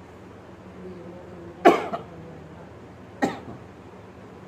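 A man coughing twice close to a microphone, about a second and a half apart. The first cough is the louder.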